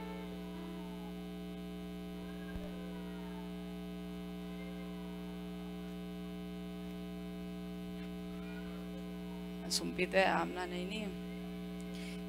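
Steady electrical mains hum from a live sound system with electric guitars plugged in, holding one low tone with faint overtones. A voice comes through briefly near the end.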